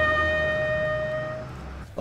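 Solo trumpet holding the long final note of its call, fading out about a second and a half in.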